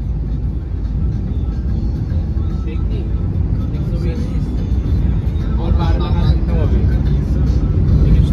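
Steady low rumble of a car's engine and tyres heard from inside the cabin while driving, with voices faintly over it.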